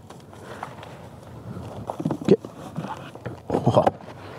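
Handling noise: paper crinkling and a few small knocks and clicks as a hard plastic storage case on a three-wheeled motorcycle is handled.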